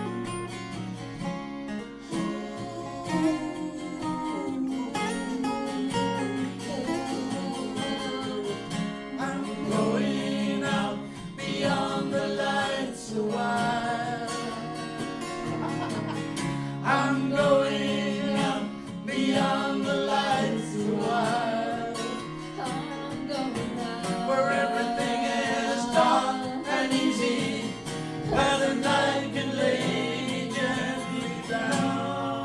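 Live acoustic band performing a song: acoustic guitars strumming chords, with a group of voices singing together, a woman's among them. The singing grows fuller about ten seconds in.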